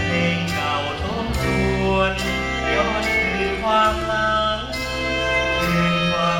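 Live band music with a man singing a Thai song into a microphone, over held bass notes and percussion hits about once a second.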